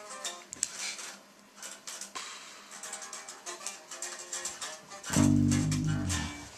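A guitar played quietly in the room, faint plucked notes mixed with small handling clicks, then a louder low note about five seconds in that fades out.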